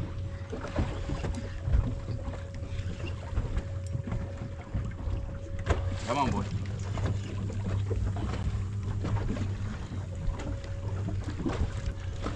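Steady low hum of a boat's engine idling, with wind on the microphone.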